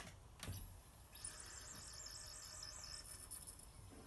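Faint, high chirping song of a small bird, a quick run of repeated notes lasting about two seconds, preceded by two soft clicks in the first half second.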